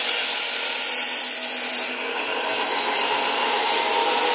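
Electric bench grinder with a steel cleaver blade held against the wheel, a steady grinding hiss over the motor's hum, dipping slightly about two seconds in. It is the sharpening stage of a hand-forged knife.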